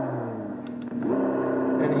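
Engine sound unit playing through a speaker: a simulated engine note winds down and fades, two short clicks sound, then about halfway through a different simulated engine starts idling steadily. The unit is being switched from one of its two programmed engine sounds to the other.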